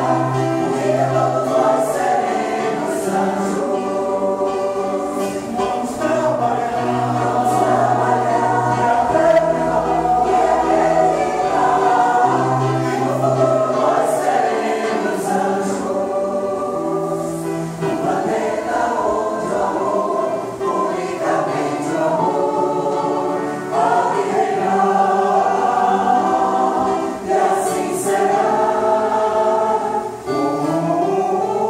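Mixed choir, mostly women's voices with a few men, singing a sustained, slow song together.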